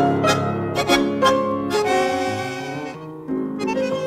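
A 1956 dance-orchestra recording of a waltz: violins carry the melody over plucked notes. The music thins out briefly about three seconds in, before the next phrase comes in.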